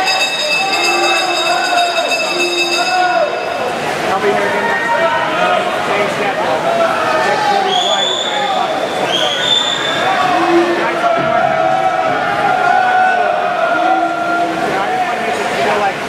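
Swim-meet crowd and teammates shouting and cheering, many voices at once, echoing in an indoor pool hall. Two short rising whistles come about halfway through.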